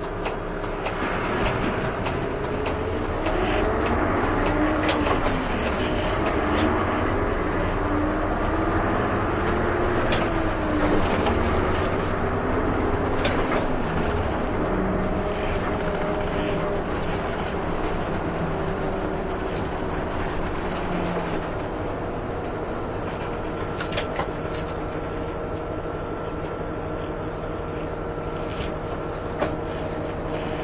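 Heard from inside a city bus: the engine and drivetrain drone rises and falls in pitch over the first half as the bus accelerates and changes speed, then settles into a steadier hum. A few sharp clicks come through.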